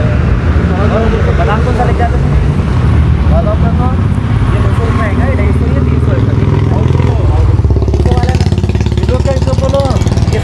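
Steady low rumble of a motor vehicle engine running close by, with people talking indistinctly over it.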